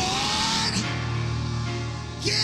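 Live church band music during worship, holding a sustained chord over a steady low bass note, with one note gliding upward in the first second.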